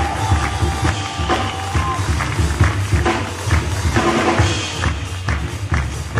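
A large jazz orchestra playing live, with a deep bass line and drums and percussion striking a steady beat about three times a second.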